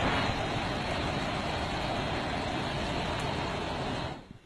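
Motorcycle exhaust silencer shooting a long jet of flame: a steady rushing noise that cuts off suddenly at the end.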